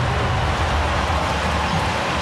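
Steady background noise of a basketball arena during live play, a continuous even rumble with no distinct ball bounces.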